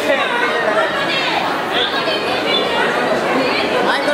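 Many voices talking and calling out at once, an overlapping hubbub of chatter.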